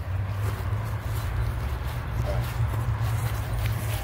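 Steady wind rumble on the microphone, with footsteps through grass as the camera is carried across a field.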